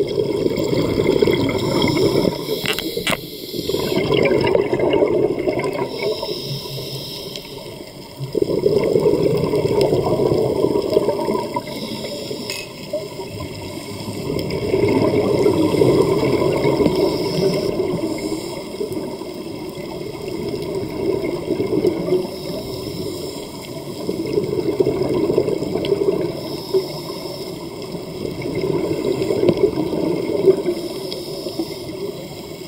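A scuba diver's breathing heard underwater: the exhaled regulator bubbles rush and gurgle in slow swells about every five to six seconds, with quieter inhalations between. A few sharp clicks come about three seconds in.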